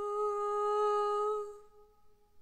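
A single sustained note, steady in pitch, held for about a second and a half and then fading away.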